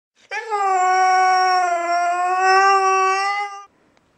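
A Siberian husky's single long howl, held at a nearly steady pitch with a slight dip in the middle, ending about half a second before the close.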